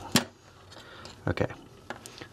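Scissors snipping through paracord once: a single sharp snip just after the start, followed by a few faint clicks.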